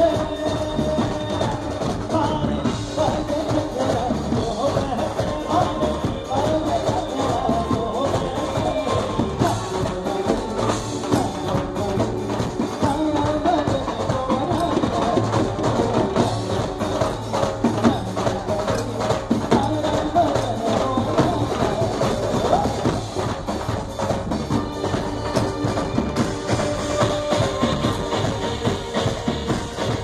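Live band playing dandiya music: a percussion-heavy groove of dhol, drum kit and hand drums under a melody line, going on steadily.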